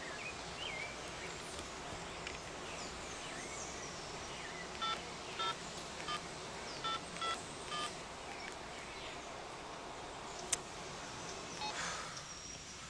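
Mobile phone keypad tones as a number is dialled: about six short beeps in quick succession, a little under a second apart, with faint bird chirps in the open-air background and a single sharp click near the end.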